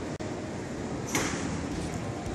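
Steady background noise of a large airport terminal hall, with a brief rustle about a second in.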